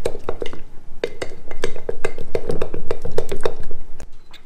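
A metal spoon stirring a thick flour-and-water batter in a glass jar, mixing a new sourdough starter. The spoon clinks rapidly against the glass, about four to five times a second, and the jar gives a short ring with each strike.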